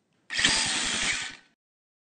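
A brief whirring, buzzing sound effect with the logo animation, lasting about a second, with a rapid low pulsing underneath, then cutting off.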